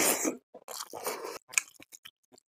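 Close-miked eating by hand: a loud wet squish as a handful of rice is pushed into the mouth at the start, then wet chewing with short smacking clicks for the rest of the time.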